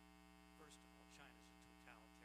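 Near silence: a steady electrical mains hum on the recording line, with faint, distant voices talking from about half a second in.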